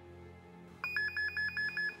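Desk telephone ringing with a fast electronic trill, about six pulses a second, starting about a second in, over quiet background music.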